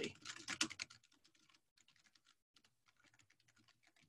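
Typing on a computer keyboard: a quick, faint run of key clicks, a little louder in the first second.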